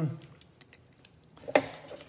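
Drawing tools being handled on a drafting board: a faint click about a second in, then one sharp hard click about one and a half seconds in.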